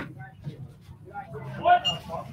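Only speech: low, indistinct talk from the commentators at the microphone, briefly louder near the end.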